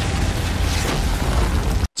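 Animated sound effect of a heavy impact blast: a continuous rumbling wash of noise with a deep low end that cuts off abruptly near the end.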